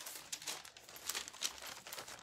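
Crackling, rustling handling noise on a phone microphone as the phone is carried and moved while walking: a steady spatter of small sharp crackles.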